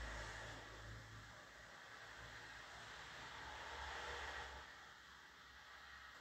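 Near silence: faint room tone with a low hum that fades out about halfway through.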